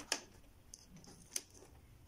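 Two small sharp clicks about a second and a quarter apart, from fingers handling clear adhesive tape on folded origami paper.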